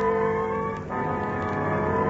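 Brass music bridge marking a scene change in the radio drama: held chords, moving to a new chord about a second in.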